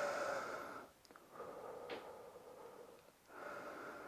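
A man breathing slowly and deeply through his mouth, about three faint breaths, catching his breath after exercise.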